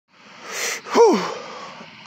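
A man sneezing: a breathy intake builds through most of the first second, then the loud sneeze itself about a second in, its voice dropping in pitch as it trails off.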